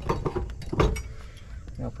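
Steel hitch parts knocking and clinking: a receiver stinger being set onto a storage bracket and its hitch pin handled, a few sharp metal knocks in the first second.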